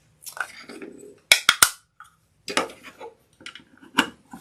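A pink plastic rotary-blade thread-cutter case (a Bladesaver-type cutter) being handled, opened and twisted shut, with rattling plastic and three sharp clicks about a second and a half in.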